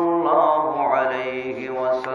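A man's voice chanting Arabic recitation in a slow, melodic style, with long held notes that bend gently in pitch.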